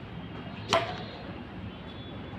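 A ball badminton racket striking the woollen ball once, a single sharp hit about three quarters of a second in.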